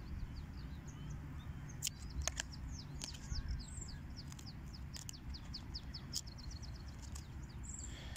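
A small bird chirping in a quick series of short, falling high notes. A few sharp clicks come from tarot cards being handled, over a steady low hum.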